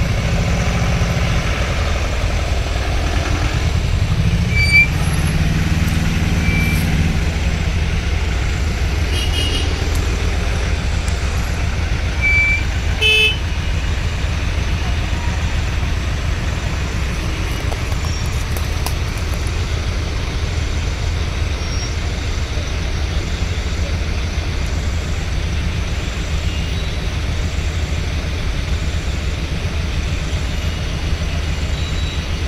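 Slow-moving road traffic of trucks and cars: a steady low engine rumble, with a few short horn toots, the clearest one about thirteen seconds in.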